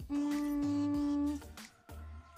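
A woman humming one steady note for a little over a second, over background music with a low bass line.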